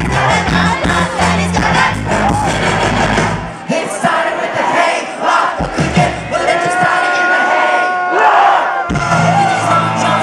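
Live rock band with electric guitars and male and female vocals, with a crowd shouting and singing along. The bass drops away about three and a half seconds in, leaving the voices, the crowd and a few held notes, and the full band comes back in near the end.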